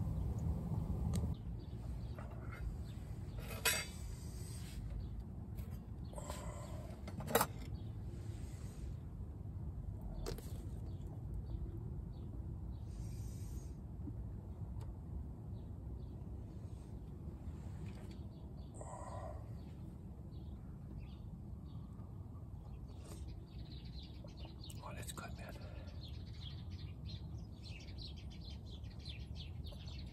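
Quiet eating: a spoon clinks sharply against a metal cook pot a few times over a steady low background hum, with faint bird chirps, most of them near the end.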